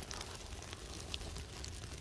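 Small paper birch bark and twig kindling fire burning, with faint scattered crackles and pops.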